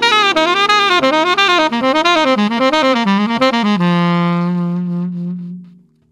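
Tenor saxophone playing a fast descending hexatonic triad-pair exercise in triplets, each small group of notes arching up and back down as the line works lower, over a sustained backing chord. A little under four seconds in it lands on a long low note that fades away.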